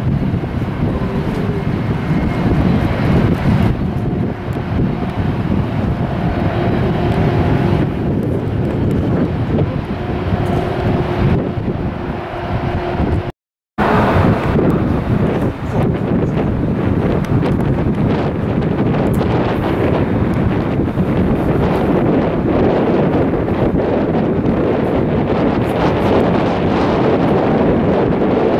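Wind buffeting the microphone, with the faint steady whine of taxiing jet airliners' engines underneath in the first half. The sound drops out briefly about halfway through.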